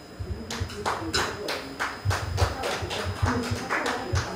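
Scattered hand claps from a small audience, about four or five claps a second.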